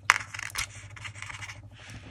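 Fingers rubbing and scraping on a thick laminated plastic tag while working a small metal eyelet into its punched hole, with a sharp click just after the start followed by uneven rustling.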